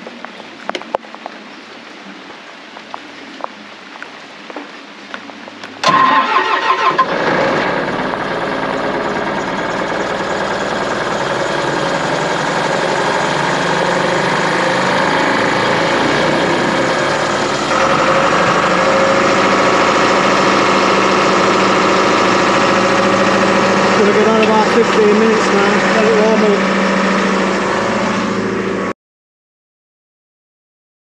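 Doosan portable air compressor's diesel engine started from its control panel, catching about six seconds in and running steadily. Its note steps up louder and higher about halfway through. The sound cuts off suddenly near the end.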